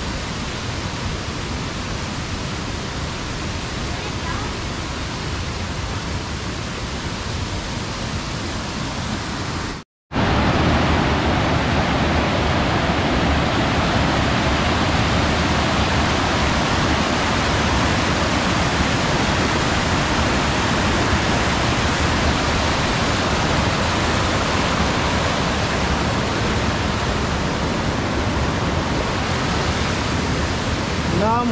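Steady rush of a waterfall cascade pouring over rocks. It breaks off for an instant about ten seconds in and comes back louder and closer.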